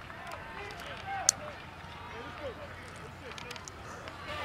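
Overlapping voices of spectators and players chattering in the background, with one sharp smack a little over a second in.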